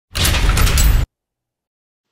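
A loud rush of noise about a second long that stops abruptly, followed by dead silence.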